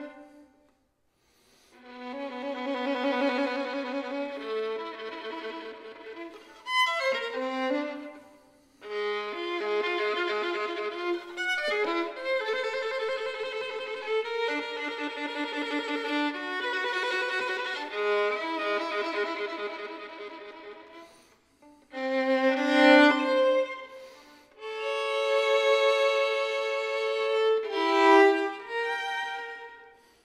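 Solo violin playing sustained bowed notes with vibrato, in phrases broken by short pauses.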